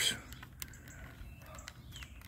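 Faint small clicks from fingers turning the tuning wheel of a plastic pocket AM/FM radio, with a few short birds' chirps in the background.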